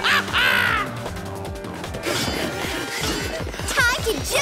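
Cartoon action soundtrack: background music with a shrill, pitch-bending cry in the first second and another near the end, and a crash among the effects.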